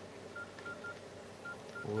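Nokia E63 keypad tones: short, identical single-pitched beeps, one per key press, as text is typed on its QWERTY keyboard. About six beeps come at uneven spacing, in two small clusters.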